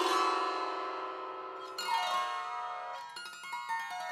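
Strings of a wooden box zither swept with the fingers: a strummed run across the strings rings out and fades, a second strum comes about two seconds in, then a few single plucked notes near the end. The instrument is not yet in tune.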